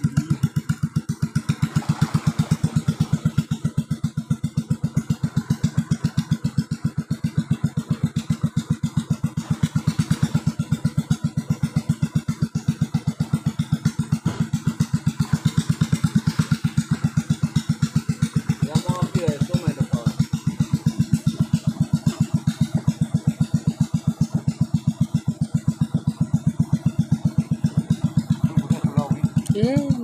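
Longtail boat engine running steadily with the boat under way, a rapid, even putter. Brief voices come in about two-thirds through and again near the end.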